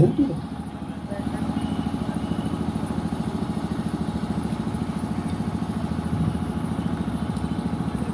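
An engine idling steadily with an even, rapid pulse, setting in about a second in.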